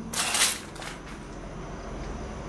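A brief scuffing rustle in the first half second, like a shoe scraping on the gritty concrete floor, followed by faint steady background hiss.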